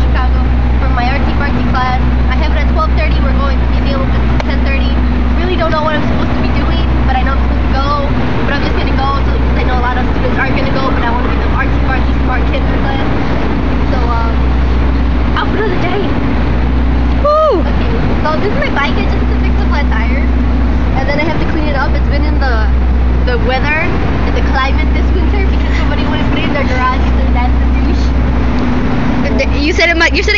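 Steady low rumble of city street noise with indistinct voices over it, and a brief rising-and-falling squeal about 17 seconds in.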